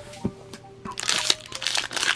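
Foil booster pack wrapper crinkling and crackling in the hands as it is opened, starting about a second in, over faint background music.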